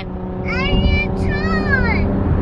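Steady engine and road drone inside a moving car's cabin, with a high-pitched voice drawing out two long phrases over it.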